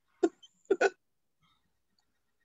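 A man's short burst of laughter over a video-call connection: three quick voiced chuckles, one and then a close pair, within the first second.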